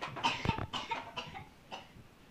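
A young child coughing in a string of short coughs, fading off near the end.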